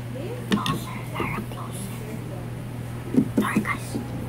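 Whispering and hushed voices with a few sharp clicks of utensils on a plate, loudest in a cluster about three seconds in, over a steady low hum.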